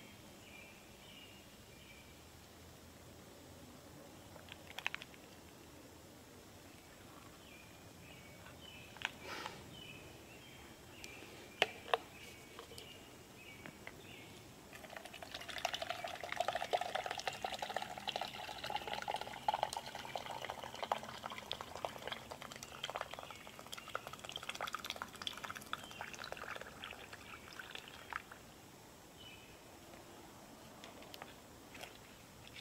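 Water poured from a bottle into a metal camp cup for about thirteen seconds in the second half, the pitch rising slightly as the cup fills. Before it come a few sharp handling clicks, with birds chirping in the background.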